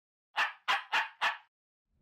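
A dog-bark sound effect: four quick barks in about a second.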